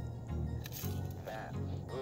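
Background music with a pulsing bass line, over faint chewing of crispy breaded fried fish.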